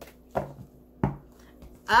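Tarot cards being handled and set down on a table, two short taps about a third of a second and a second in.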